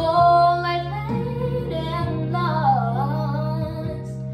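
A young girl singing a slow pop ballad, holding long notes over a steady instrumental accompaniment, with her pitch sliding down partway through.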